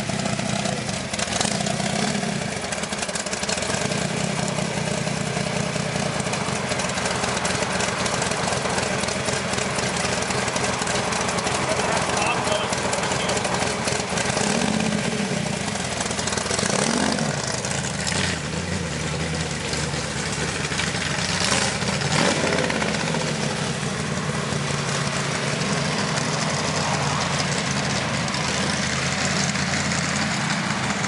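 AC Cobra's V8 running at low speed through its side-exit exhaust pipes as the car is driven off, with a few brief rises in revs around the middle.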